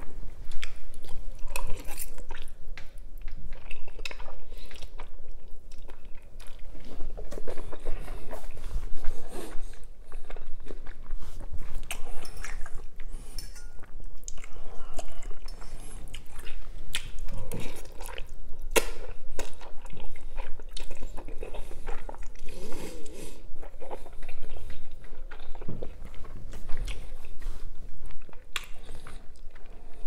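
Close-miked chewing of soft noodles, with a metal fork clicking and scraping against a glass bowl in many irregular sharp ticks.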